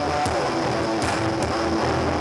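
Live rock band playing through a venue PA: drums struck with sticks, with a few sharp cymbal hits, over electric guitar and a steady bass line.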